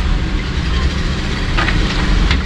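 A steady low rumbling noise, with a couple of light clicks near the end.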